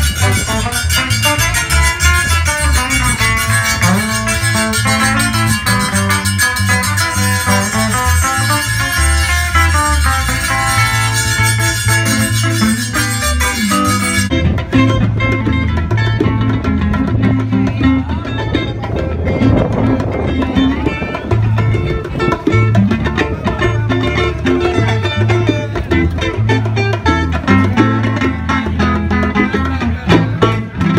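Live band music with guitar over a steady, repeating bass line. About halfway through the sound abruptly turns duller, losing its top end.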